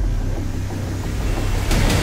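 Hybrid trailer-music sound design: a deep, low rumble left at the bottom of a falling pitch drop, with a hissing swell coming in near the end.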